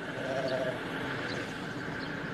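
A sheep bleating once, faintly and briefly, over steady background noise.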